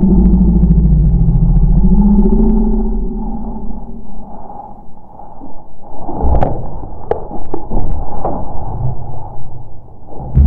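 Loud low rumble of handling noise close to the microphone, with the tongs and the rat held in them by a feeding puff adder. From about six seconds in come rustling and a scatter of light clicks.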